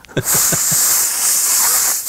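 A man imitating a crash cymbal with his mouth: one long, steady, high hissing "pssh" that starts sharply and holds for nearly two seconds.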